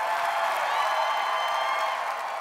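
Studio audience applauding and cheering, a steady wash of clapping.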